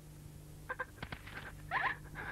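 A quiet, steady low hum with a few faint clicks in the middle, and a short, high, bending vocal sound near the end, like the start of a cry.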